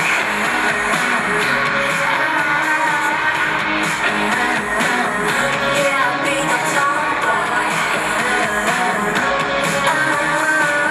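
K-pop performance music with female singing over a steady bass beat and guitar.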